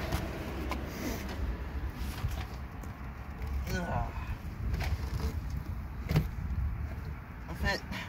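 Scuffing and scattered knocks as a person squeezes on his back into a stripped car's footwell under the dashboard, his body and clothes against the bare floor and dash, over a steady low rumble on the phone microphone. A strained vocal sound comes about halfway, and a single word near the end.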